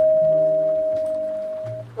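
Electronic call chime of a digital queue management system's sound module: the tail of one long tone, fading slowly and cutting off just before the spoken ticket-number announcement.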